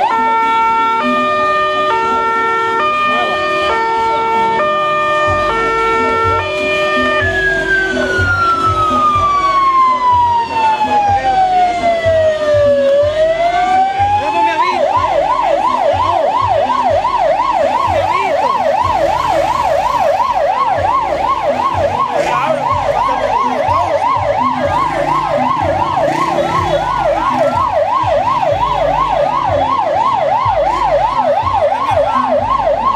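Fire truck's electronic siren cycling through its tones. First comes a stepped pattern of short notes, then about a quarter of the way in one long falling wail that turns back up. From about halfway it settles into a fast yelp of roughly three rising-and-falling sweeps a second, over a low engine rumble.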